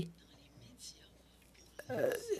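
Near silence: room tone in a pause between a speaker's words, broken by a hesitant 'uh' near the end.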